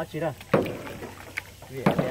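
Kayak paddle strokes: a double-bladed paddle working in the water, with two sharp hits a little over a second apart and a fainter one between.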